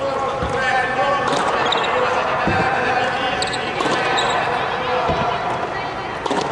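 Tennis balls being struck with rackets and bouncing on the court: a few dull thuds and sharper hits, spaced a second or two apart, under indistinct voices.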